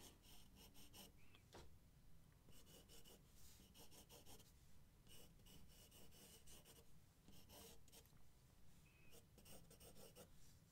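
Faint pencil sketching on drawing paper: light, quick graphite strokes come in short runs with brief pauses between them as a horse's jawline is roughed in.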